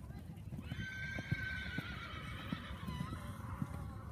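A horse whinnying: one long, wavering call that begins about half a second in and dips in pitch near the end, over faint hoofbeats on the arena's sand footing.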